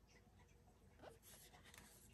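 Near silence, with a faint rustle and a soft click about halfway through as the RC buggy's chassis is handled and turned over.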